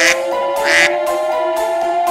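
Background music with a long, slowly rising tone, over which a cartoon goose gives two short quacking calls, one at the start and one under a second later.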